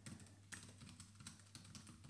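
Faint keystrokes on a computer keyboard, a quick irregular run of clicks as a terminal command is typed.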